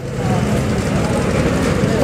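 A motor vehicle going past close by: a steady rumble, heaviest in the low end.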